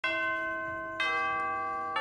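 Three bell-like chimes on different notes, about a second apart, each ringing on and slowly fading: a channel intro jingle.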